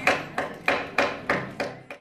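Hammering: a regular run of sharp strikes, about three a second, each dying away quickly.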